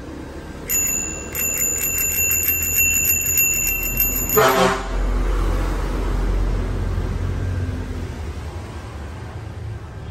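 Bicycle handlebar dome bell rung rapidly over and over for about four seconds, starting about a second in. A low rumble follows after the ringing stops.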